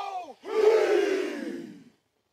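A group shouting a battle cry: a short shout, then a long, loud yell that falls in pitch and cuts off abruptly.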